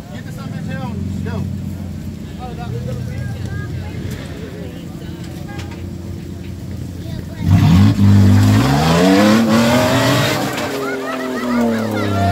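Off-road 4x4's engine idling, then revved hard about seven and a half seconds in, the pitch climbing and holding high for a couple of seconds before falling back. Tyres spin and throw mud while it is revved, as the stuck vehicle tries to climb out of a mud pit.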